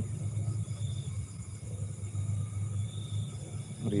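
Outdoor night ambience: a steady low rumble, with a faint high insect trill that comes and goes twice.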